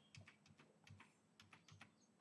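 Near silence with a run of faint computer-keyboard clicks, several a second.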